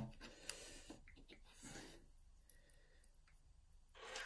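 Near silence with a few faint small clicks and a soft rustle: fingers handling a brass euro cylinder lock and tiny metal parts, such as a circlip, from a pinning tray.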